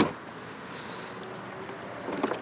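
A single sharp click right at the start, then a steady, quiet background hiss.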